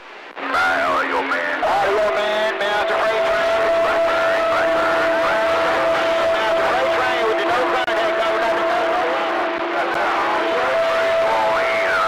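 CB radio receiver on channel 26 with several stations keyed up at once: garbled overlapping voices through static, with steady whistle tones held for several seconds over the top.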